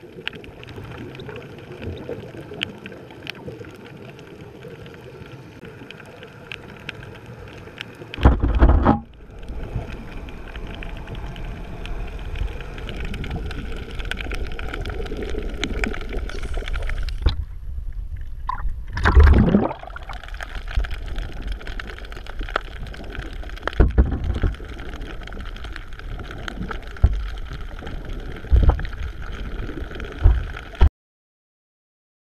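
Underwater sound through a camera housing: scuba exhaust bubbles gurgling in loud surges, the biggest about eight and nineteen seconds in, over a steady water hiss with scattered clicks.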